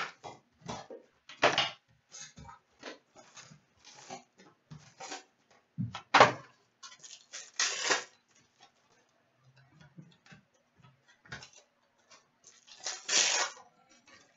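Hockey trading cards and their packaging handled on a glass counter: an uneven run of short rustles, flicks and taps. Longer, louder crinkling rustles come about six to eight seconds in and again near the end.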